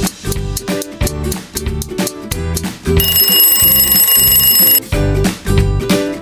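Upbeat background guitar music with a steady beat; about three seconds in, an alarm-clock bell rings steadily for nearly two seconds, the signal that the time to answer is up.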